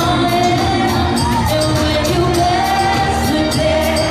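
Live female vocalist singing amplified through a PA over a backing track with a steady dance beat, holding long notes that slide between pitches.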